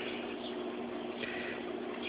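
Reef aquarium equipment running: a steady low hum over an even hiss.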